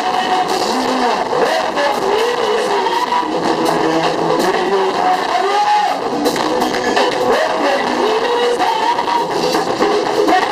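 Live band music led by electric guitars, with a melody line that slides up and down in pitch over steady percussion.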